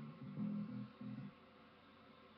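Acoustic guitar playing a few separate low notes, stopping about a second and a half in, after which only faint hiss remains.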